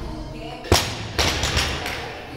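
Barbell loaded with bumper plates dropped onto a rubber gym floor: one heavy thud about two-thirds of a second in, followed by a few smaller knocks as it settles.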